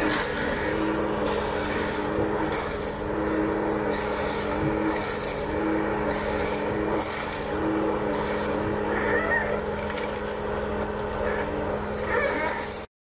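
Ponsse Ergo forest harvester running at work: a steady engine tone with a higher tone that comes and goes every second or two as the crane and harvester head handle a stem.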